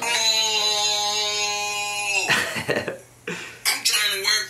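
A man's voice holding one long steady note for about two seconds, dropping in pitch as it ends. A short cough-like burst of breath follows, and speech starts near the end.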